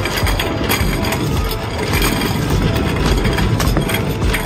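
Shopping cart rolling over a hard store floor, its wheels and frame rattling steadily with the basket riding on top.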